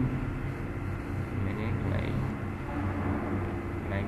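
Steady low background hum, with a faint voice murmuring briefly around the middle.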